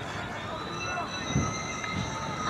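Several steady high-pitched squealing tones over outdoor background noise, with a low thump about one and a half seconds in.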